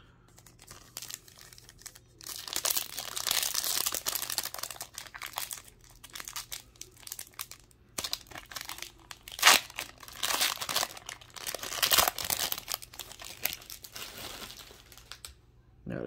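A foil trading-card pack wrapper being torn open and crinkled in the hands: an irregular run of crackling rustles with two sharper, louder rips past the middle.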